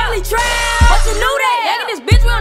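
Hip-hop track with rapped vocals over a deep 808 bass line, and a noisy hiss-like hit about half a second in. The bass cuts out for the last half second.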